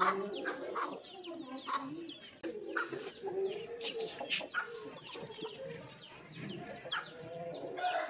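Chickens clucking in a low, wavering voice, with many short, high, falling bird chirps throughout.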